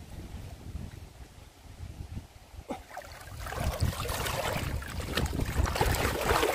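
Water sloshing and splashing as a hand-held mesh fishing net is worked through shallow muddy water and lifted, water pouring out through the mesh. Quiet at first with a low wind rumble on the microphone, the splashing builds up about three seconds in and stays loud.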